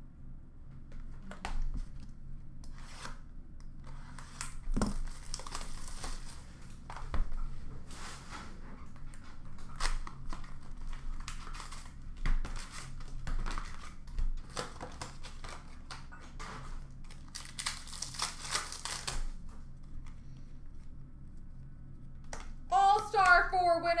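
Hockey card packs being torn open and the cards handled: crinkling and ripping wrappers, with two longer tearing stretches about five seconds in and around eighteen seconds, and many small clicks and taps as cards are shuffled and set down.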